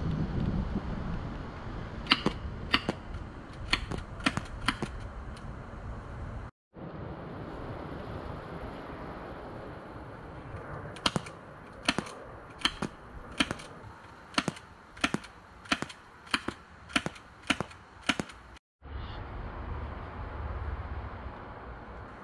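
Suppressed ST-23 gas-powered airsoft pistol firing a string of quiet, sharp clicking shots: about six a few seconds in, then about a dozen more in a steady run of roughly one every 0.6 s. Wind rumbles on the microphone underneath.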